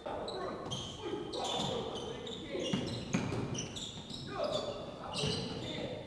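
Basketball practice on a hardwood gym floor: a ball bouncing several times, short high-pitched sneaker squeaks, and players' voices calling out in the background.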